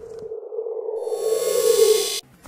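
A horror-film scare sting: a sustained synthesized tone swelling steadily louder, joined about halfway by a shrill, bright high layer, building to a sudden peak.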